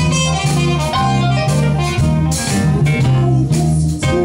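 Band playing 1950s-style rock and roll, with a bass line stepping between notes about twice a second under a steady drum beat and a lead instrument above.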